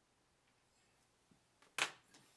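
Near silence, then a single loud, sharp click near the end.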